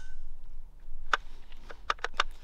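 Steyr AUG bullpup trigger mechanism clicking as the trigger is dry-fired: two faint clicks, about a second in and near the end. The trigger is squishy, with a lot of play.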